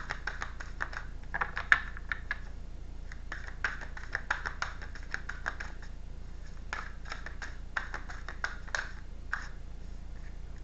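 A deck of oracle cards being shuffled by hand: runs of quick card flicks and clicks in three spells with short pauses between, with one sharp snap near two seconds in.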